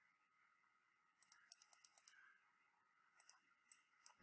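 Faint clicks of a computer mouse over near silence, a run of about eight a little after a second in and a few more near the end.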